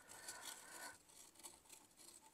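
Faint rubbing and scraping of a caulking gun's nozzle drawn along firebrick as refractory sealant is squeezed out.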